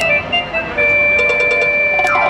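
Electronic keyboard music: a few short synth notes, then about a second in a long held high note over a lower sustained note, like the opening of a dance number.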